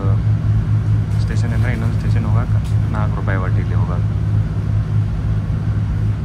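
Inboard engine of a small passenger boat running steadily underway, a loud, constant low hum heard from inside the cabin.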